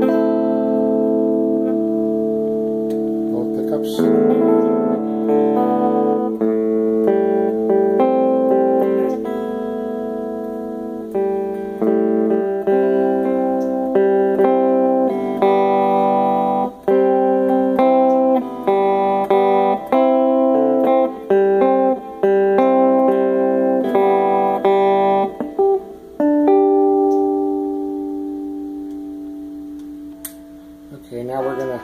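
ESP LTD electric guitar with active pickups played through a Gorilla GG110 solid-state combo amp, its tube-crunch circuit not yet switched on. Chords are struck and left to ring, a new one every second or so, and the last chord fades out near the end.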